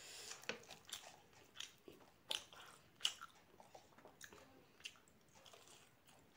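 Close-miked mouth sounds of someone chewing puri dipped in chole (spiced chickpea curry): a string of short, sharp crunching and smacking sounds at an uneven pace, the loudest a little past two and three seconds in.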